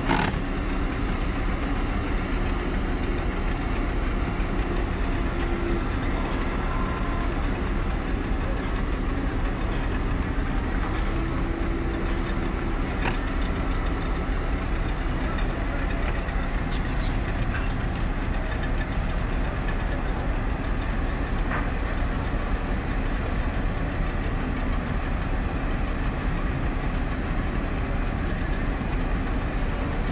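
Boat engine running steadily at an even pitch and level, with a few faint clicks.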